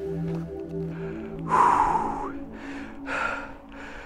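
Background music fading out, then a man breathing hard from a steep uphill climb: a loud gasping breath about one and a half seconds in, followed by a few fainter breaths.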